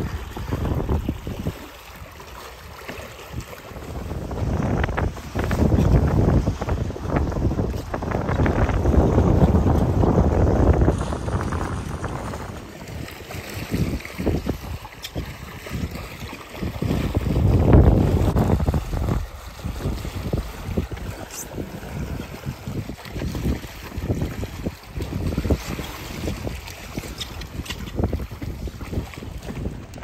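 Wind rushing over the microphone and water washing along the hulls of a Hobie 16 catamaran under sail. The rush swells loudest twice, over several seconds in the first third and again a little past halfway.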